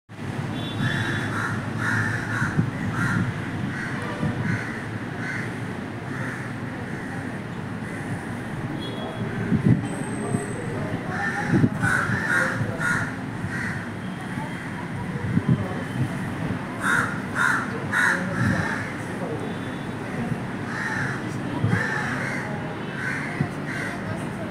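Crows cawing in several short runs of harsh, repeated calls through the whole stretch, over a steady low background rumble.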